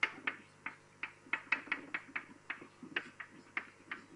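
Writing on a lecture board: a run of short, faint taps and clicks, three or four a second and unevenly spaced.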